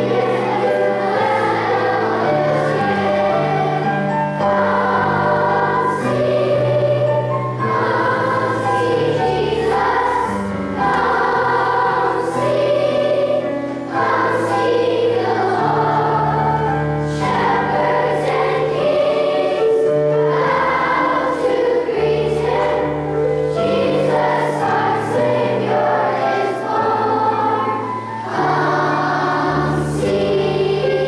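A large children's choir singing with instrumental accompaniment, a low bass line moving under the voices in notes held a second or two each.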